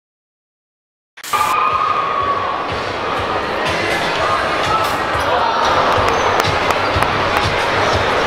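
Silence for about a second, then gymnasium sound cuts in: crowd chatter with a basketball bouncing on the court floor.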